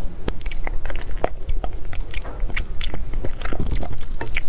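Close-miked eating sounds: a metal spoon scooping soft cream sponge cake and the thin plastic container crackling in the hand, with chewing, heard as an irregular run of sharp clicks and crackles.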